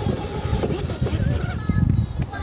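Wind rumbling unevenly on the microphone over the faint running of a child's battery-powered ride-on toy car as it moves along the sidewalk.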